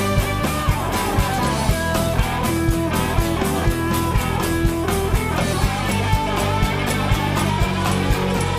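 Rock band playing an instrumental passage live: drums keep a steady beat under bass and strummed guitars, with a lead line of held notes over the top.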